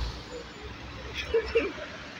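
Street traffic: a steady low rumble of road vehicles, with a brief snatch of voices about one and a half seconds in.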